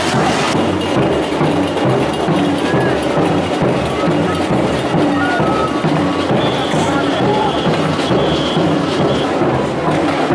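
Samba percussion band drumming a steady, driving beat, with crowd voices over it.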